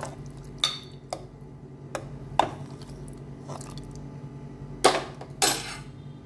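Steel ladle stirring a thick curry in a metal pot, clinking and scraping against the pot's sides in scattered strokes, with two louder knocks near the end. A steady low hum sits underneath.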